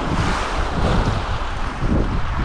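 Small waves washing onto a pebble shore, with a steady noisy wash and wind rumbling on the microphone.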